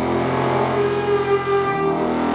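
Free-improvised acoustic ensemble music: several instruments holding long, overlapping sustained tones.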